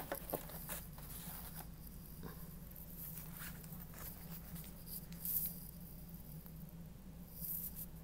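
Plastic Border Buddy stencil templates and a packaged card being handled and shifted on a desk: soft rustles and light taps, with a louder rustle about five seconds in, over a steady low hum.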